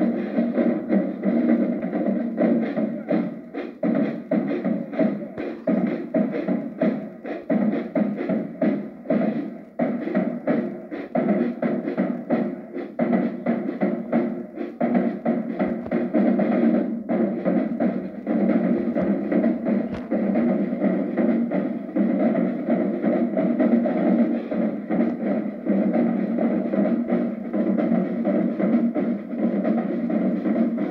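Marching drumline of snare drums, bass drums and cymbals playing a fast, continuous cadence of dense rapid strokes, with a brief dip about ten seconds in.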